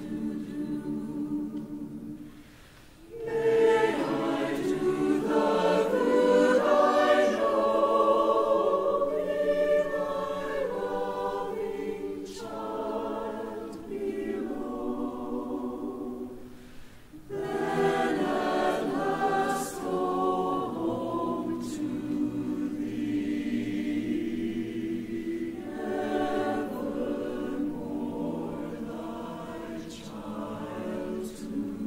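Church choir singing in harmony, a slow sung response in long phrases that break off briefly about three seconds in and again around seventeen seconds.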